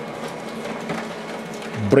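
HP Color LaserJet Pro 4302dw laser printer running a double-sided print job: a steady mechanical whir with a low hum as the paper feeds through.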